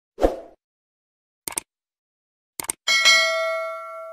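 Subscribe-button animation sound effects: a short pop, then two sharp clicks about a second apart, then a bright bell ding of several tones that rings and fades away.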